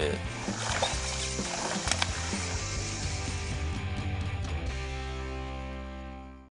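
Background music with sustained chords and a high shimmering wash, fading out near the end.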